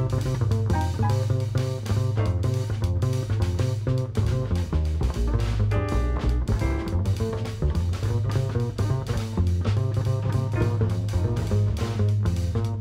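Small jazz band playing: upright double bass plucked in strong, stepping notes over a drum kit with cymbals, with chords comped above.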